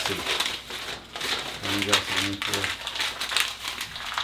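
Packaging crinkling and rustling in hands as a parcel is unwrapped, in irregular crackly bursts, with a few words of speech partway through.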